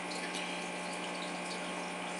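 Aquarium filtration running: a steady rush of moving water with a constant low hum.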